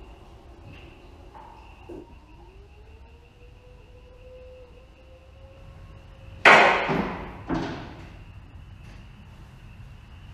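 Two-post vehicle lift lowering a full-size pickup: a faint steady whine with a slowly rising tone as it comes down, then two loud metallic clunks about a second apart, about two-thirds of the way through.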